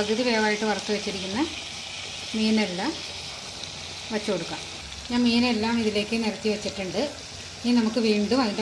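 Steady sizzle of fish and masala frying in a pan.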